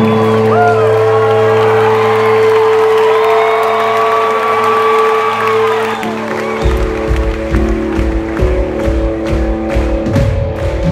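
Live rock band holding a sustained chord while the audience cheers and whoops. About six and a half seconds in, this gives way to music with a steady drum beat.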